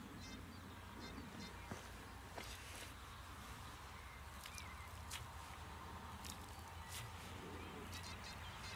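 Faint scattered clicks and scrapes of hands working through loose, dry, stony plowed soil, heard over a low steady rumble.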